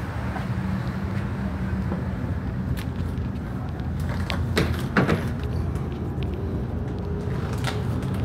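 Steady low mechanical hum, with a handful of sharp clicks and knocks; the loudest is about five seconds in.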